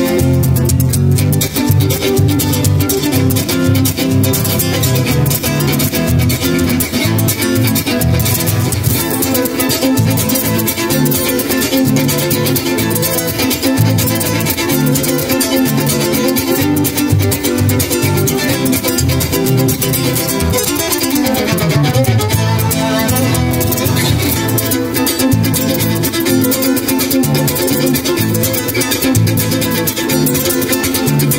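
Violin and flamenco guitar duo playing an instrumental piece: the nylon-string guitar keeps up a busy strummed and plucked rhythm under the bowed violin. A falling run in the low range comes about two-thirds of the way through.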